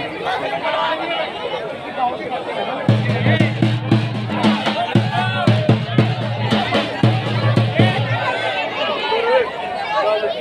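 A drum beaten in a fast run of strokes over a steady low tone, starting about three seconds in and stopping near the end, with crowd chatter throughout.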